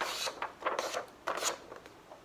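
A sheet of paper being folded in half and creased by hand, heard as three short papery swipes as the fold is pressed flat.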